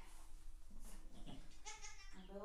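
A goat bleats once, briefly, near the end: a single high call with many overtones.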